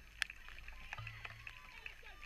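Open-air ambience behind a football goal: a low rumble with many irregular sharp ticks, the two loudest close together near the start, and faint distant calls from players.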